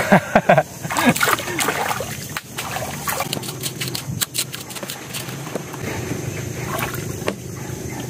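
Shallow water sloshing and splashing, with scattered knocks and scrapes as a long knife digs into the mud among mangrove roots.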